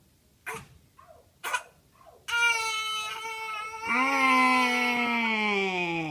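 A toddler crying: two short sobbing breaths, then from about two seconds in long, loud wails, the last one sliding down in pitch.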